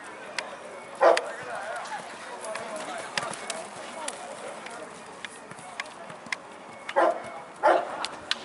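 A dog barking: one bark about a second in and two close together near the end, over faint background voices.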